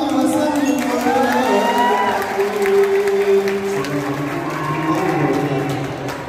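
Marawis group's male voices singing a sholawat in long, drawn-out notes that slide between pitches, with the drums nearly silent.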